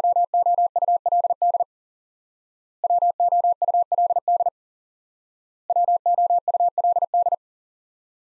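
Morse code tone, a single pitch of about 700 Hz keyed at 40 words per minute, sending the word "would" three times in a row, with a pause of about a second between repeats.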